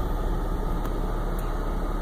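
Car engine running with a steady low hum, heard from inside the car's cabin.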